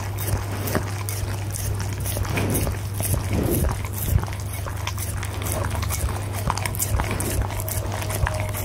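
A goldendoodle licking a plate clean, its tongue making quick, irregular wet clicks and smacks against the plate. A steady low hum sits beneath.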